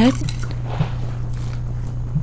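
Chopsticks stirring a brine of sugar, white vinegar, water and salt in a bowl to dissolve it: a faint, soft swishing with a small tick or two, over a steady low hum.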